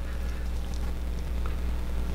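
Steady low background hum with a couple of faint, soft ticks.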